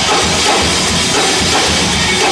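Rock band playing live through a PA: electric guitars and bass over a driving drum kit, loud and dense without a break.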